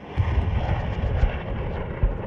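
Rockets launching from a truck-mounted rocket launcher: a sudden start, then a steady rushing noise over an uneven low rumble.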